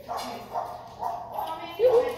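A dog making several short pitched calls, the loudest near the end.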